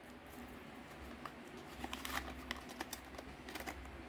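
Faint handling noises: a few scattered light clicks and rustles as a folding knife in a vacuum-sealed plastic pack is handled and set down, over a low room hum.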